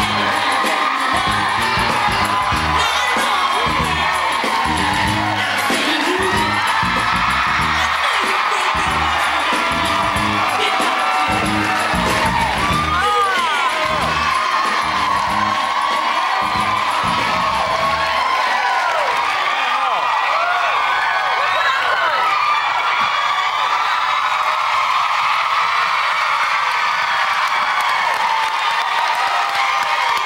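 Pop music with a steady beat over a studio audience cheering, whooping and screaming. The beat stops a little over halfway through, leaving the audience cheering and screaming.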